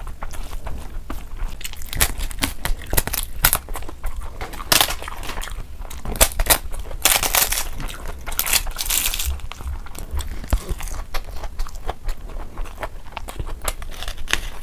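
Close-miked eating sounds: chewing and mouth clicks on a mouthful of rice and egg curry, with a hand squishing and mixing rice and curry. The sounds come as a dense, irregular run of clicks and short crackly bursts.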